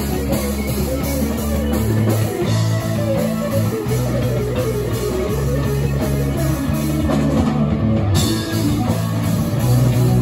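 A live rock band playing: electric guitars and a drum kit, loud and continuous.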